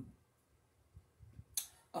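A pause in a woman's speech: mostly very quiet, with a couple of faint low bumps, then a short sharp breath in near the end just before she speaks again.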